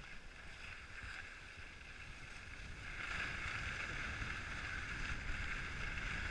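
Skis sliding on packed snow, a steady hiss that gets louder about three seconds in, with wind rumbling on the microphone.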